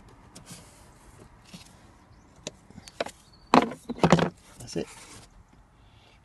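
Hard plastic clicking and scraping as the clip on a Ford Transit's cabin filter housing cover is released and the cover is worked off. A few faint clicks come first, then two loud, short scrapes a little past halfway, followed by weaker ones.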